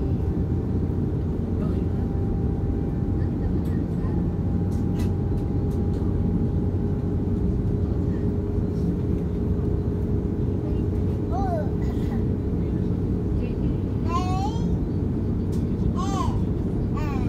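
Steady low rumble of cabin noise inside an Airbus A330neo airliner while it taxis, with a faint steady hum over it. Passengers' voices come in briefly a couple of times in the last few seconds.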